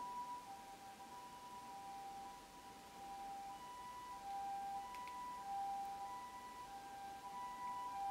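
Faint background music: two held notes, one a little higher than the other, slowly taking turns over a soft hiss.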